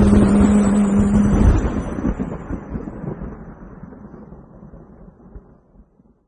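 Rain ambience with a deep rumble, fading steadily away to faint. The song's last held note dies out about a second and a half in.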